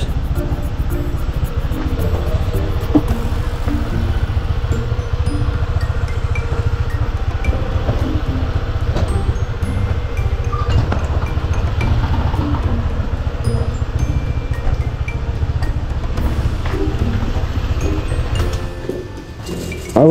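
Motor scooter riding slowly, its engine and a steady low rumble on the mounted camera's microphone, with faint music-like chiming notes over it. The rumble falls away near the end as the scooter comes to a stop.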